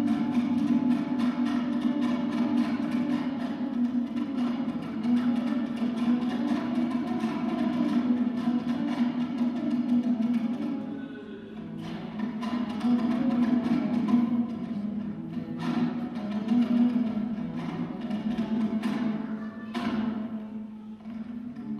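Solo dombra, the Kazakh two-stringed lute, playing a küi: fast strummed strokes over a steady low drone, softening briefly about halfway through before picking up again.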